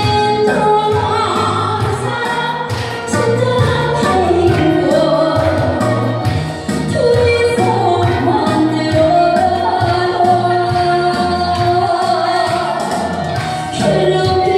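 A woman singing a song into a microphone over instrumental accompaniment with a steady beat.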